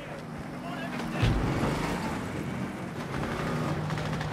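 Military armoured car's engine running as it drives, with a heavy thud about a second in that is the loudest moment.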